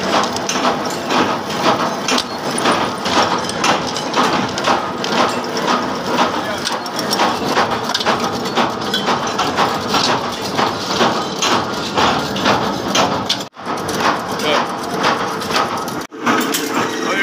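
Nut tapping machines running in a workshop: a steady, fast metallic clatter of many rapid small knocks, broken by a brief dropout about three-quarters through.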